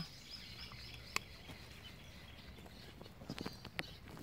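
A stray cat eating dry kibble from a plastic bowl: faint crunching and clicking, with a sharp click about a second in and a cluster of clicks near the end as it shifts at the bowl. A faint, high, steady chirring runs behind it for the first half or more.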